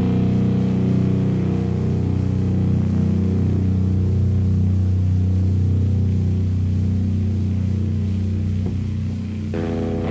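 A sustained low drone in a thrash/doom metal recording: a held chord rings steadily and slowly fades, and new notes come in near the end.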